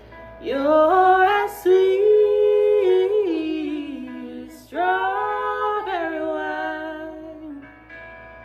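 A singer belting a wordless vocal run in two long phrases, each sliding down in pitch near its end, over a quiet backing track of held chords.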